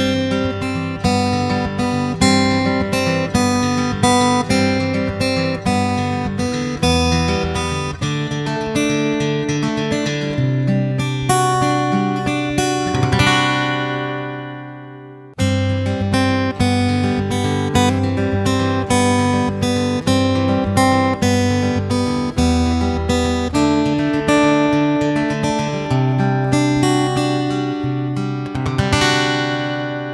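Steel-string dreadnought acoustic guitar (Orangewood Echo limited edition) playing a picked passage that ends in strummed chords and rings out, heard through its onboard condenser microphone. About halfway through there is a cut, and the same passage plays again through its under-saddle pickup, with the sharper note attack typical of an under-saddle pickup.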